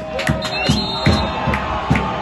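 Football crowd singing a chant to a bass drum beaten steadily about twice a second, with scattered claps and shouts.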